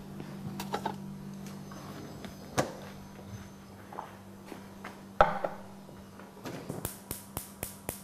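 Scattered light knocks and clicks of kitchen items being handled on a counter, one louder knock about five seconds in, then a quick run of sharp clicks in the last second and a half, over a steady low electrical hum.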